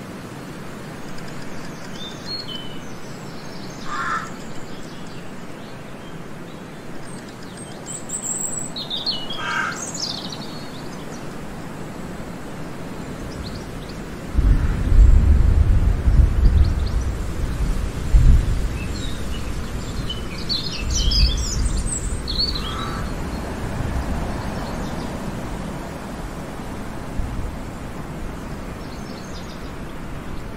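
Forest ambience: a steady hiss with songbirds chirping and calling now and then. A low rumble comes in about halfway through, swells for several seconds and is the loudest sound.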